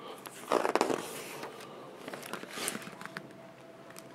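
Pages of a hardcover picture book being turned: a loud paper rustle and flap about half a second in, then a lighter rustle near three seconds.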